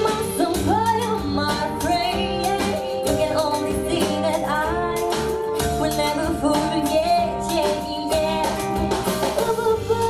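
A young girl singing into a handheld microphone over a backing track with guitar and a steady beat, holding long notes and sliding between pitches.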